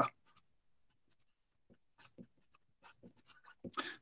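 Faint scratching of a marker pen on paper as a word and an arrow are written, in a string of short separate strokes.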